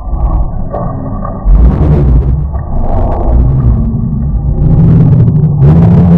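Liquid spilling from a cup tipped off a head onto a lying man's face, followed by a loud scuffling commotion with heavy rumble from a jostled microphone, and two sharp rushes of noise, one about one and a half seconds in and one near the end.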